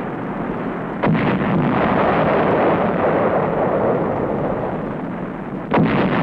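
Two large explosions, one about a second in and one near the end, each a sudden blast trailing off into a long rumble, over a steady background rumble.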